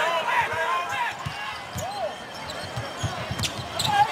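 Basketball dribbled on a hardwood arena court, a run of bounces, with short squeaks from players' sneakers.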